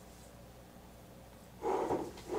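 Quiet room tone for most of the moment. Near the end comes a short, wordless vocal sound from a woman, voiced and pitched like a hum.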